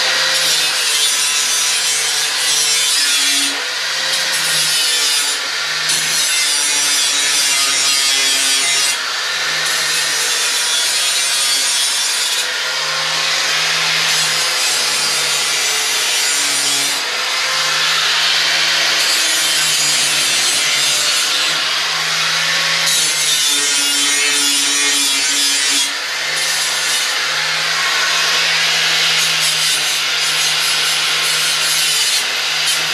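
Corded handheld power tool cutting sheet metal, its motor running continuously under a harsh cutting noise that lets up briefly every few seconds as the cut goes on.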